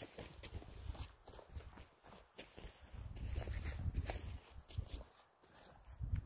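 Footsteps of a hiker on a dirt trail, with taps of a trekking pole, breaking into a jog, over a low rumble.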